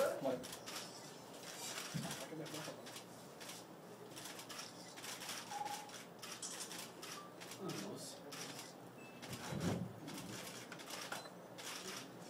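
Camera shutters clicking many times in irregular runs, over faint murmuring voices.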